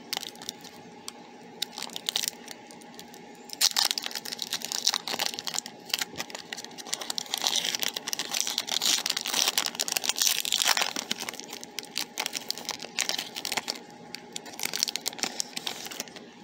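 Foil Pokémon booster pack wrapper being crinkled and torn open by hand: an irregular run of crackles and rips, busiest in the middle.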